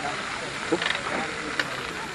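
Food frying in pans on portable gas cartridge stoves, a steady hiss, with a couple of sharp clicks of utensils against the pans and faint voices in the background.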